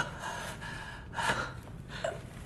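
A man gasping in pain, sharp breaths at the start and again about a second later.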